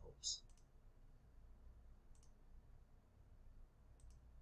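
Near silence: room tone with a few faint computer mouse clicks, a couple just after the start and one about two seconds in.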